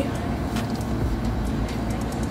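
Steady low hum of a window air conditioner running, with a faint click or two of handling.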